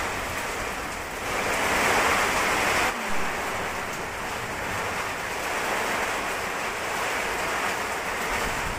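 Storm rain and wind, a loud, steady rush of noise. It grows louder in the first three seconds, then changes abruptly to a slightly quieter, even wash of wind and rain.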